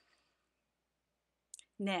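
Near silence, broken by one short click about a second and a half in, then a woman's voice starts to speak.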